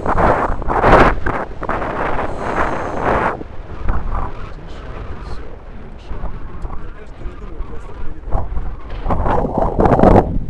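Wind buffeting an outdoor microphone in uneven gusts, with people's voices talking unclearly under it.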